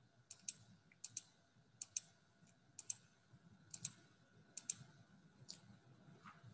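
Faint clicks of a computer button, about seven quick double clicks roughly a second apart, as the presenter advances the slideshow.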